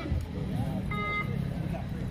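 Mixed voices of players and onlookers at an outdoor kabaddi match, with a short steady high tone about halfway through.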